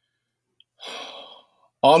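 A man's audible breath, a short airy rush under a second long, taken in a pause mid-sentence before he speaks again.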